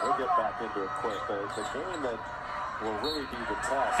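A TV play-by-play commentator's voice from a college basketball broadcast, quieter than the host's voice around it, over a basketball being dribbled on a hardwood court.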